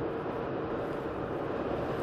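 Steady road and engine noise inside a moving car's cabin, with a faint steady hum.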